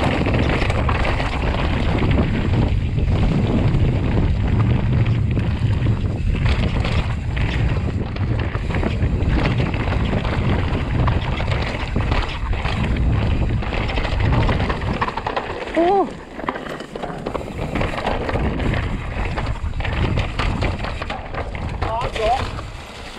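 Wind buffeting the microphone over the rumble, knocks and rattles of a mountain bike's tyres, suspension and drivetrain running fast over rocky singletrack. The noise eases briefly about two-thirds of the way through, with a short high-pitched sound.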